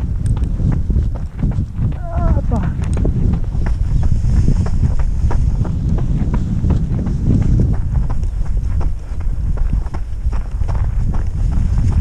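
Wind buffeting the microphone, with a quick, even run of footsteps crunching on a gravel track. A short wavering voice sound comes about two seconds in.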